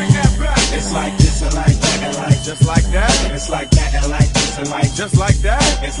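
Hip hop track playing: a rapper's verse over a beat with a deep repeating bass line and punchy drums.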